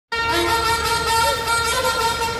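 A reedy wind instrument holding one long, steady note, with a brief wobble in pitch about a second in.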